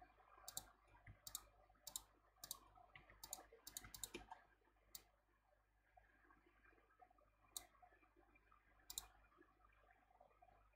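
Faint computer mouse clicks, about a dozen sharp single clicks: a quick run through the first five seconds, then a few spaced ones, over quiet room tone.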